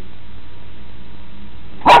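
Low steady background hiss, then a dog gives a single loud bark near the end.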